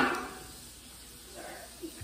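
The end of a spoken word, then quiet room tone with a faint, brief murmur about one and a half seconds in.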